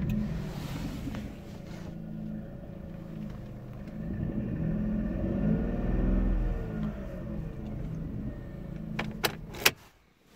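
Vauxhall Corsa D car engine running just after being started on a newly programmed spare key, which the immobiliser has accepted. It is revved briefly midway, then a few sharp clicks come near the end and the engine stops.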